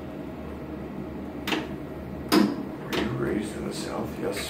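Two sharp clicks about a second apart, the second louder, over a steady low hum from room equipment, with faint voices near the end.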